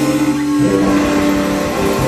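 Live blues-rock band playing, with sustained electric guitar notes held over the bass; the chord shifts about halfway through.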